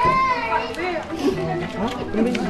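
Children's voices calling and chattering, with music playing underneath.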